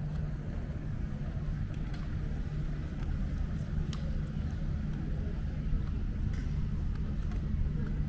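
Steady low mechanical hum, like idling engines or a generator, under outdoor street ambience, with a few faint clicks.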